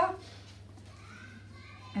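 Quiet room with a steady low hum; about a second in, a faint child's voice in the background, rising and falling briefly.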